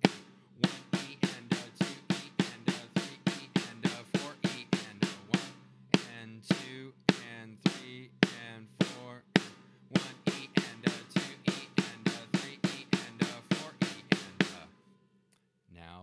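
Drum strokes at an even tempo on a drum kit: a sticking exercise of alternating single strokes turned into double strokes, led with the left hand. The strokes stop about a second and a half before the end.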